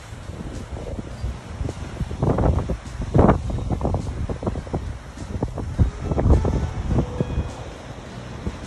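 Wind buffeting the microphone in irregular gusts, with ocean surf breaking against lava rocks underneath. The strongest gusts come a couple of seconds in, at about three seconds and at about six seconds.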